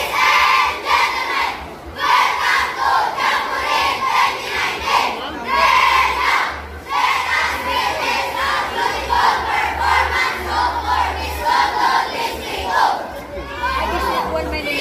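A large group of schoolchildren shouting a rehearsed group yell in unison. The loud chanted phrases are broken by short pauses.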